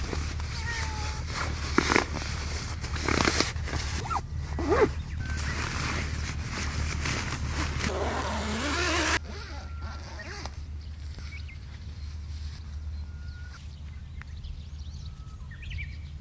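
Nylon sleeping bag and tent fabric rustling and crinkling as the sleeping bag is stuffed into its sack and the tent is handled, with sharp crackles. About nine seconds in it gives way to a much quieter outdoor background with a few faint short chirps.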